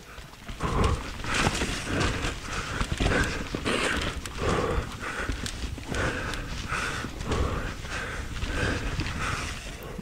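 A mountain-bike rider's heavy, rhythmic panting, picked up close by a chin-mounted camera under a wind cover. It runs over the rattle and knocks of the bike and tyres going over roots and rocks on a fast descent.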